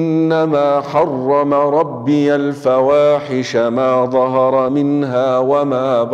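A man reciting a Quran verse from Surah Al-A'raf in Arabic, chanted in tajwid style in a few long melodic phrases with held, wavering notes.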